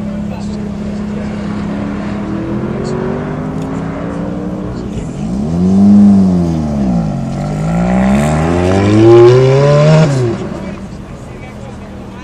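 Sports car engine accelerating hard from a standing start, its pitch climbing through the revs and falling sharply at the upshifts, about six to seven seconds in and again near ten seconds. It is loudest in the middle stretch, and one of the gear changes is badly fumbled.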